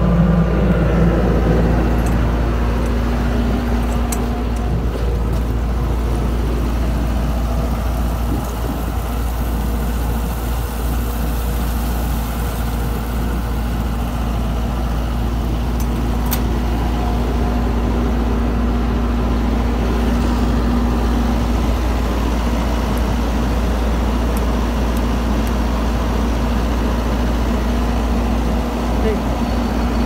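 Engine running steadily: a constant low rumble with a steady hum over it, with no change for the whole stretch.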